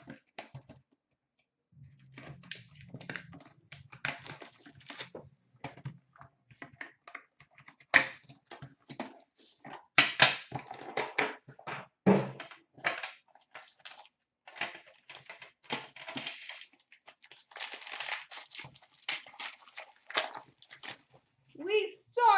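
Plastic wrapping crinkling and tearing in irregular bursts with scattered clicks and taps of cardboard as a sealed trading-card box is unwrapped and opened by hand.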